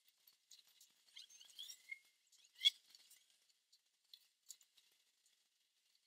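Near silence, broken by a few faint high-pitched ticks and squeaks and one short, sharper click about two and a half seconds in.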